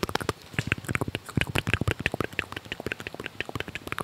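Rapid, irregular crackling and rustling close to the microphone as a polyester football shirt is scrunched and handled.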